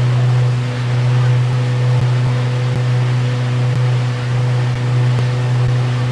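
A tour boat's engine runs with a steady low drone while water rushes along the hull and wake.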